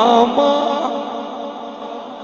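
A man chanting a devotional verse into a microphone and loudspeakers. A held note with a wavering pitch breaks off just after the start and a shorter, steadier note follows. The voice then dies away about a second in.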